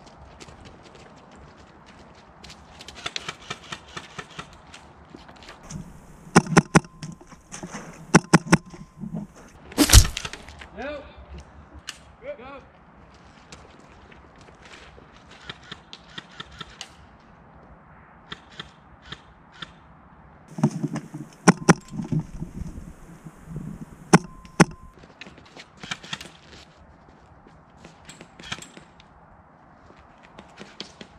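Airsoft guns firing single shots in quick clusters of sharp clicks and pops, with quiet gaps between the exchanges. One much louder crack comes about a third of the way through.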